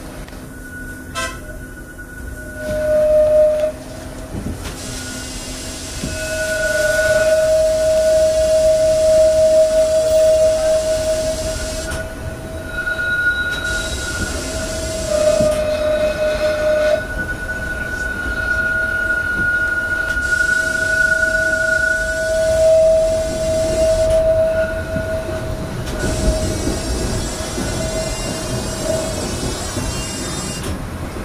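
Blackpool Centenary tram squealing as it runs, heard from inside the car. A loud, steady high squeal on two pitches fades and returns several times over the tram's running noise.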